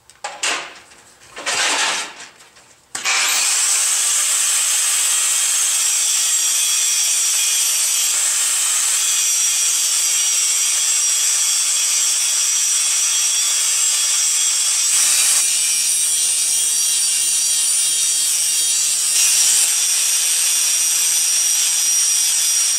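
Milwaukee 4½-inch angle grinder grinding the tool steel of a pair of channel-lock pliers in a spark test. The steady, high-pitched grinding starts abruptly about three seconds in, shifts slightly in tone a couple of times, and keeps going.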